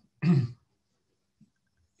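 A man briefly clears his throat once, a short rough burst in the pause between sentences.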